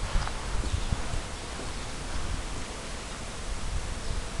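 Footsteps of a person walking on a paved path, heard as irregular low thumps over a steady outdoor hiss.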